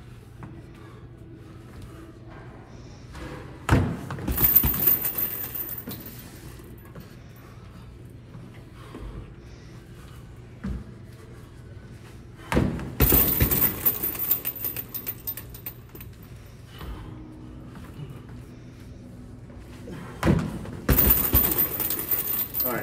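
Three rounds of a jump landing followed by a quick flurry of punches on a hanging heavy bag, with a metallic jangle as the bag swings, coming about eight seconds apart. Steady low room hum between the rounds.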